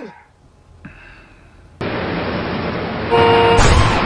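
Street traffic noise that starts abruptly about halfway through as a steady rush, with a car horn sounding once for about half a second near the end.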